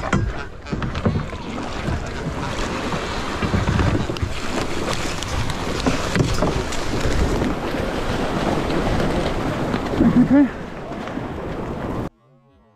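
Wind buffeting the camera microphone over water splashing and lapping around a kayak as it is paddled into the shallows and up to the shore.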